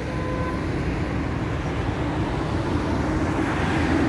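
Steady road traffic noise from passing cars and vans, growing slightly louder toward the end.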